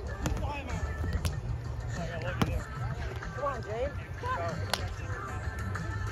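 Scattered voices of players across an outdoor roundnet tournament with sharp, irregular pops of roundnet balls being hit, over a steady low rumble of wind on the microphone.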